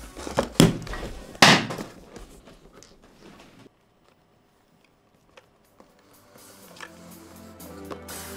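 Cardboard product box handled against the white magnetic levitation stand: two sharp knocks about half a second and a second and a half in, with smaller clicks and scraping around them. After a short silence, background music comes in near the end.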